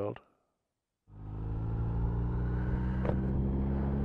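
Motorcycle engine running steadily at a cruise, with a rush of wind and road noise; it starts suddenly about a second in.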